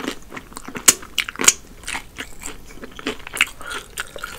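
Close-miked chewing of Popeyes fried chicken, with irregular crunching and crackling from the fried crust. The two sharpest crunches come about a second in and again half a second later.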